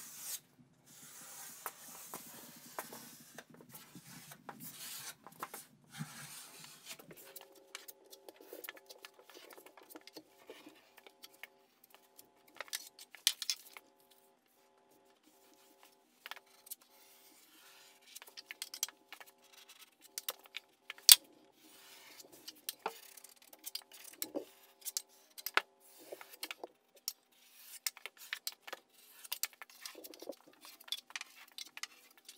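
Metal taping knife scraping along a drywall corner, smoothing joint compound over paper tape: an irregular run of soft scrapes and clicks, with a brief pause about halfway.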